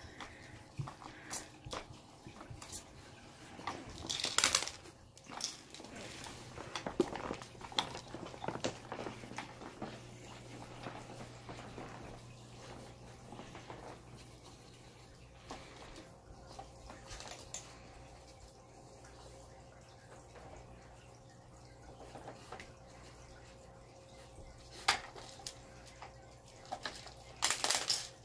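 A puppy working a plastic treat-puzzle toy with its nose: scattered light plastic clicks and knocks as the blue cylinders are pushed and turned on their frame. The louder knocks come about four seconds in and again near the end.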